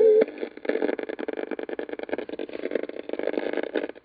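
Watson RR 5534 radio cassette recorder: guitar music from the speakers stops just after a key click, then the speakers give a dense, rapid crackling static, as of the radio tuned off-station.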